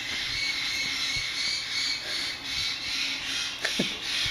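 Parrots chattering steadily in the background as a high-pitched twitter, with one short falling note near the end.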